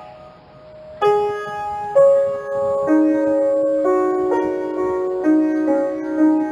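Slow, gentle piano music. A note fades out over the first second, then new notes and chords are struck about a second in and roughly once a second after, each ringing on.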